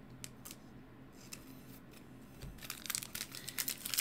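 A few faint clicks of cards being handled, then, from about two and a half seconds in, the crinkling and tearing of a 2023 Bowman baseball card pack's foil wrapper being ripped open, growing louder toward the end.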